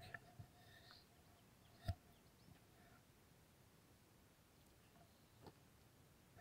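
Near silence, with one short click about two seconds in and a fainter click near the end.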